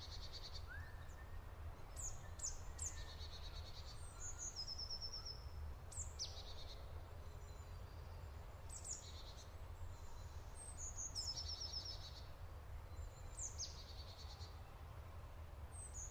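Faint birdsong: high chirps, each a quick falling whistle often followed by a short trill, coming every couple of seconds over a low steady hum.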